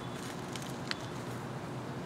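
Steady, quiet background noise with a faint hum, broken by one soft tick just before a second in.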